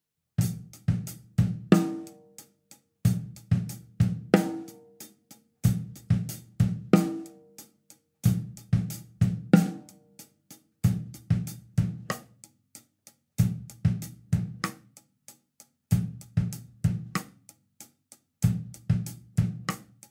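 Drum kit playing a rock groove: eighth-note hi-hat over a syncopated bass drum and snare figure. The same one-bar pattern repeats about every two and a half seconds, some eight times over.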